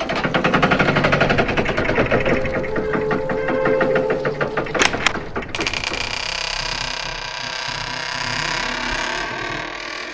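Secret-passage opening sound effect: a loud, fast mechanical rattling and grinding, with a sharp knock about five seconds in, after which it settles into a steadier grinding.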